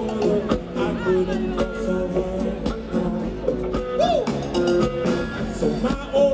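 Live band music from the stage: electric bass and drum kit with percussion playing a steady groove between sung lines.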